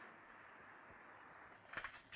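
Near silence: a faint steady hiss, with a few faint clicks near the end.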